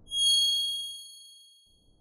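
A single bright, bell-like chime from a video logo sting, struck just after the start and ringing out, fading away over about a second and a half.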